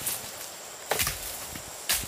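Sharp woody cracks, two about a second apart, of dry bamboo and dead branches breaking as people push up through dense undergrowth, over a faint steady high hiss.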